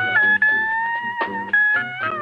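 Pedal steel guitar playing long held notes that slide gently in pitch, over a steady plucked backing rhythm.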